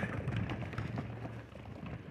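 Light footsteps of several people running and stepping on concrete and bleachers during exercise drills, faint under outdoor background noise.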